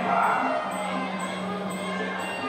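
Muay Thai ring music (sarama): a sustained wind melody over small hand cymbals ticking about twice a second. Crowd noise swells briefly near the start.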